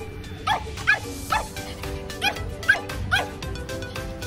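Pomeranian barking in a quick, high yappy series, about six barks, as it teases a bigger dog in play.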